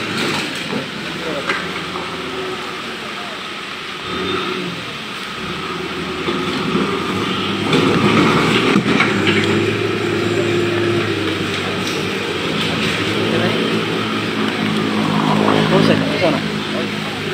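Diesel engine of a John Deere backhoe loader running, growing louder about eight seconds in.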